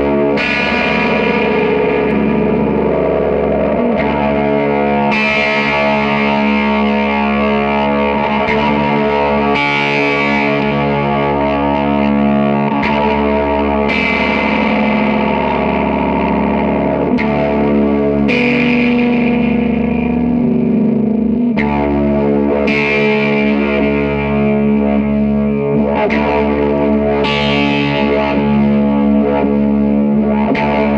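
Music: a dense, sustained drone of layered guitar run through effects, with distortion and echo, its chords changing every few seconds.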